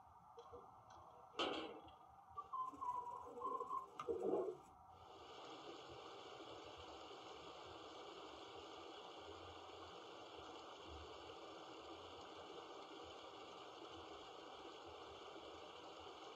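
Broadway Limited HO-scale operating water tower, set off in overflow mode, playing its built-in sound effects. A few short sounds come in the first four seconds. Then, from about five seconds in, a faint, steady hiss of water pouring runs on.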